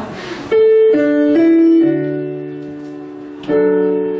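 Roland digital stage piano playing a slow solo intro: a chord struck about half a second in, a few more notes added over the next second and left to ring and fade, then a fresh chord near the end.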